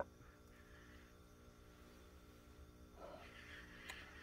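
Near silence, with a faint, soft sound about three seconds in.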